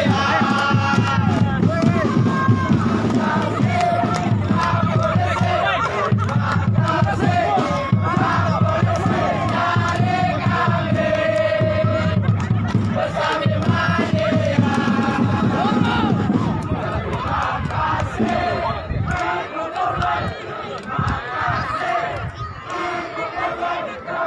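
Crowd of football supporters chanting and singing together, with shouts mixed in. The chanting thins out and grows quieter over the last several seconds.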